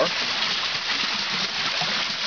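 Steady rushing and splashing of creek water driving a water wheel.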